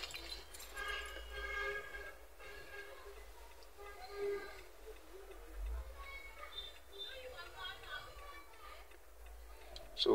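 Faint background speech over a low, steady hum.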